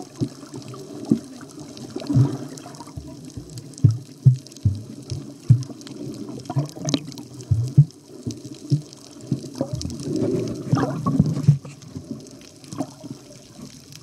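Water sloshing and gurgling close to the microphone, with irregular dull knocks, as when the camera is splashed at or just below the surface.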